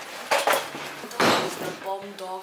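A heavy door being pushed open, with clunks and metallic clinks, the loudest knock a little over a second in. A voice starts right at the end.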